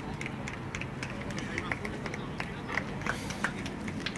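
Outdoor football-ground ambience: a steady low background with faint, indistinct distant voices.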